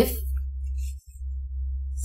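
Steady low electrical hum on the recording, dropping out for an instant about a second in.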